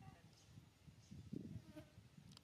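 Faint buzzing of a flying insect close to the microphone, near the edge of silence, swelling briefly about a second and a half in.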